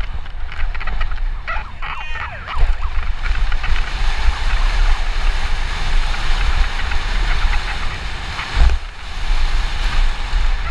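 Santa Cruz Nomad mountain bike running fast down a dry dirt trail, heard from a helmet camera: wind buffeting the microphone over the tyres rolling on loose dirt and gravel and the rattle of the bike. A brief high squeal about two seconds in, and a heavy thump near the end as the bike hits a bump.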